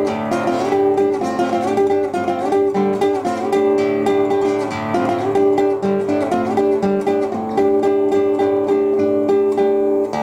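Nylon-string classical guitar fingerpicked without a break: a fast repeated-note pattern over bass notes.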